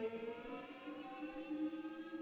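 Solo cello played with the bow, softly: a held note dies away in the first half second and a lower note is then drawn out long, drifting slightly upward in pitch.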